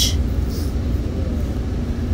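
Steady low rumble of a moving train, heard from inside the carriage.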